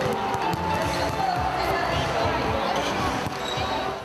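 Several basketballs bouncing irregularly on a parquet floor in a large sports hall, many players dribbling at once.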